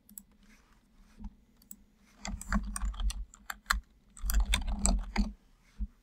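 Computer keyboard typing: two quick runs of keystrokes, each about a second long, with a few single clicks before and after.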